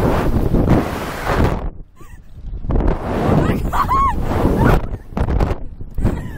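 Wind rushing over the ride-mounted microphone in surges as the Slingshot reverse-bungee capsule swings, dipping briefly about two seconds in and again near the end. A rider gives a short high-pitched squeal about four seconds in.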